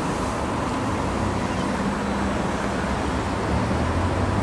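Steady background noise, an even rumble and hiss with a faint low hum, like distant traffic or ventilation.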